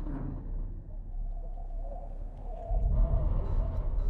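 A low, steady rumble of horror-film sound design, with a faint wavering tone above it, swelling louder about three seconds in.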